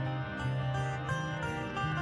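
Steel-string acoustic guitar with a capo, played solo: a repeating pattern of picked notes ringing over a low bass note that returns about every half second.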